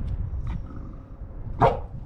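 A dog barks once, short and sharp, about one and a half seconds in, during rough tug-of-war play.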